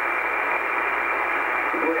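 Static from an Icom IC-R8500 communications receiver tuned to 6754 kHz in upper sideband: a steady hiss held to a narrow voice range, with the Volmet voice saying "break" near the end.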